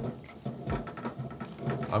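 Baitcasting reel being cranked slowly as fishing line is wound onto its spool: a faint gear whir made up of many fine, rapid ticks.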